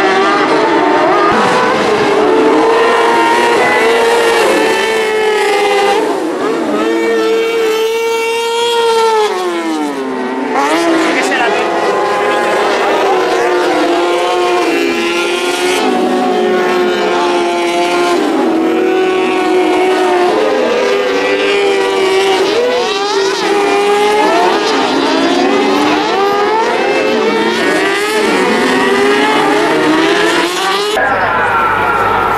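Several kartcross buggies racing on a dirt track, their high-revving motorcycle engines rising and falling in pitch as they accelerate, shift and brake into corners. About eight to ten seconds in, one engine note drops steeply as a car slows, then climbs again.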